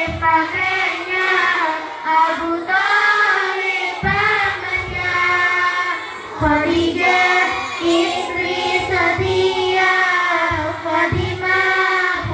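A group of young girls singing an Arabic devotional song (sholawat) together in a slow, drawn-out unison melody, one voice amplified through a microphone.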